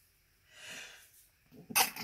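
A man sneezing: a breathy intake about half a second in, then one sharp, loud sneeze near the end.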